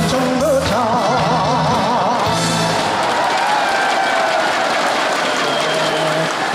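A man singing a Korean trot song with a live band: a line sung with wide vibrato, then a long held final note that slowly sinks in pitch.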